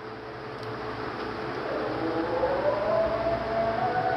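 A siren winding up: a tone that starts rising about one and a half seconds in, climbs over about two seconds and then holds steady, growing louder.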